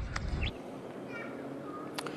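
A low rumble for the first half second, cut off abruptly, then quiet outdoor background noise with a few faint short bird chirps.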